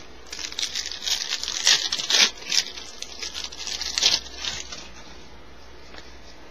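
A 1994 Upper Deck Series 2 baseball card pack's wrapper being torn open and crinkled by hand. It makes a run of crisp crackling rustles for about four and a half seconds, loudest around the middle.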